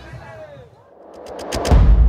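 Music and voices fade out, then a few sharp cracks come about a second and a half in, followed by a loud deep boom that rumbles on.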